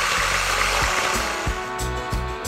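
An electric hand mixer runs steadily, its beaters whipping cream and condensed milk in a bowl. About halfway through, background music with steady notes and a regular beat fades in over it.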